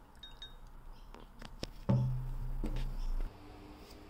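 A few light clinks of a metal spoon against a glass mug, one with a faint ring. About halfway through, a sudden low hum comes in, the loudest sound, and cuts off after about a second and a half.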